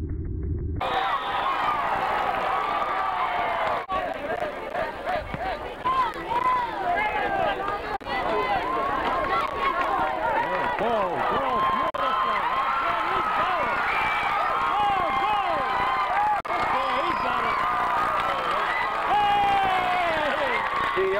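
Football crowd shouting and cheering, many voices overlapping at once. It starts about a second in, when a brief low rumble cuts off.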